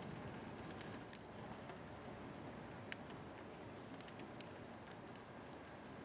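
Steady rain falling, with scattered sharp ticks of drops.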